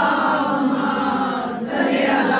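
A group of voices chanting together in unison, holding long, drawn-out notes at a steady level.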